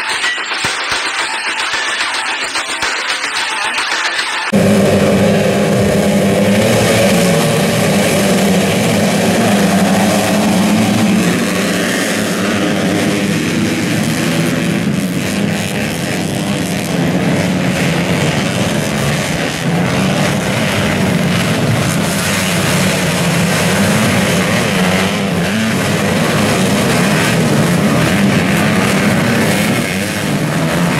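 Small-displacement motocross bikes, a mix of modified two-strokes and four-strokes, racing as a pack, their engines revving up and down as the riders work the throttle through the dirt-track turns. It starts abruptly about four and a half seconds in, after a thinner, brighter opening.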